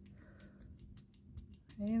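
A small pump-spray water spritzer giving a few quick, faint squirts, each a short click and hiss, to wet an inked stamping block.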